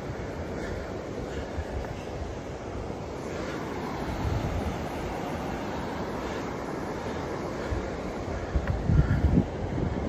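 Steady low outdoor rumble of wind on a phone microphone and road traffic, swelling for a moment about nine seconds in.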